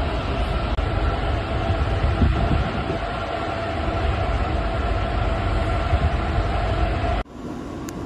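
Steady rumbling drone and wind noise on the open deck of a cruise ferry under way, with a faint steady hum above it. About seven seconds in, it cuts off suddenly and gives way to a quieter, steady rumble.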